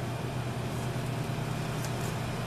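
Steady low mechanical hum of commercial kitchen equipment, with a faint click near the end.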